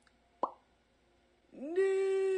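A single short plop about half a second in. Then, near the end, a voice slides up into a long, steady wail.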